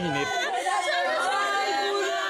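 Several people crying and wailing in grief, high drawn-out cries overlapping one another: the lament of mourners.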